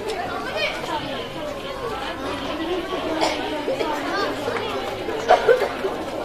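Chatter of many people talking at once, with no single voice standing out.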